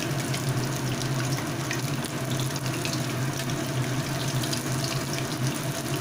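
Soybean kofta balls deep-frying in hot oil in a kadai: a steady bubbling sizzle with faint crackles, over a steady low hum.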